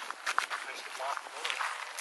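Footsteps on a dirt trail, several steps in a row as someone walks along it.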